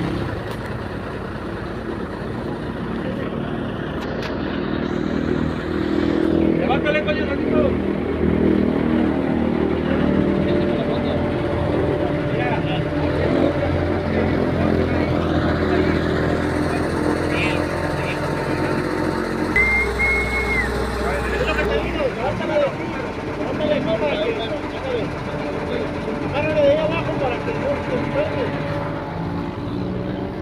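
A vehicle engine running steadily under indistinct voices of several men talking, with a short high steady tone about two-thirds of the way through.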